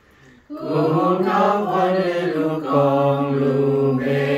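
A small group of voices singing a hymn together without accompaniment, in slow held notes; the singing comes back in after a brief pause about half a second in.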